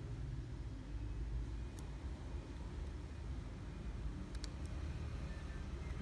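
Steady low hum of background room noise, with a couple of faint light clicks about two seconds in and again around four and a half seconds.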